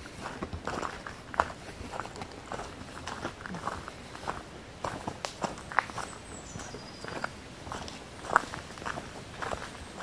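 Footsteps of one person walking at a steady pace on a dirt woodland track covered in leaf litter, each step a soft crunch.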